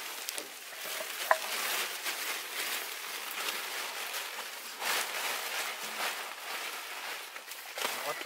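Plastic tarpaulin rustling and crinkling as it is handled, with a louder rustle about five seconds in.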